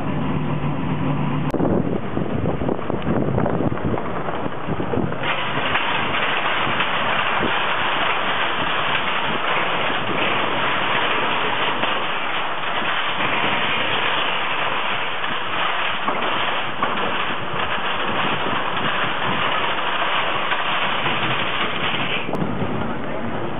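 A steady engine hum, then about a second and a half in a switch to rushing noise from a moving vehicle with wind on the microphone, which grows louder and brighter about five seconds in.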